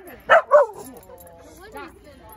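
Year-old dogs giving two short barks in quick succession as they greet each other, with a person laughing. Fainter whines and voices follow.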